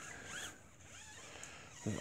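Faint rubbing of an applicator wiping tire dressing onto the rubber sidewall of a tire, with a few short squeaks.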